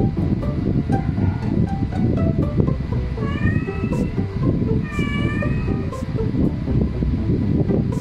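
A cat meowing twice, each meow under a second long, begging to be let in through a closed door, over continuous background music.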